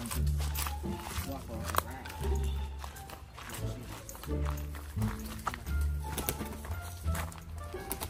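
Background music with a deep bass line repeating in short held notes, and a voice over it.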